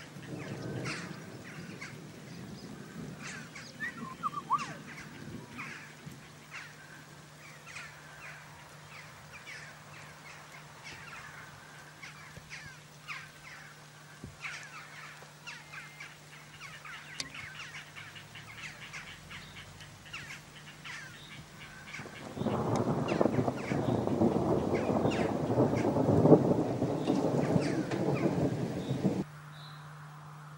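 Birds calling in many short chirps. A faint low hum joins them a few seconds in. About three-quarters of the way through, a loud rushing noise takes over, then cuts off suddenly shortly before the end.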